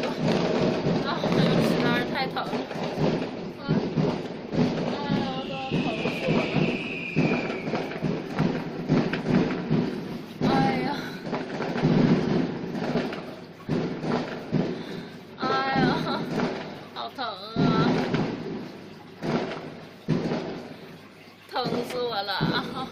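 A young woman's voice moaning and whimpering in pain from a sprained ankle, in short broken sounds with one longer high whine, over continuous rustling of cloth and bedding.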